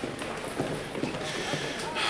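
Background ambience of a busy corridor: faint murmuring voices and footsteps, with no one speaking up close.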